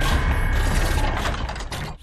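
Dubbed-in mechanical sound effect of a Transformers-style robot toy: rapid ratcheting clicks and gear whirring over a low rumble, fading near the end.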